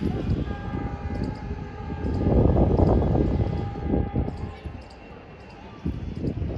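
Strong wind buffeting the phone's microphone in gusts, loudest midway, with a faint steady tone held underneath for about four seconds.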